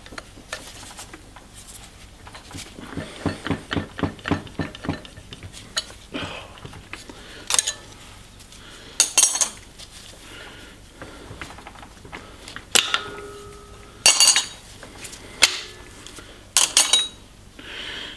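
Flat steel levers clinking and scraping against a diesel injection pump's metal body as they are worked out by hand: scattered sharp metallic clinks, one leaving a short ringing tone, and a run of small quick ticks.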